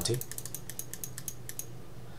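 Rapid run of small clicks from a computer mouse, about ten a second, as the value is adjusted, stopping about one and a half seconds in.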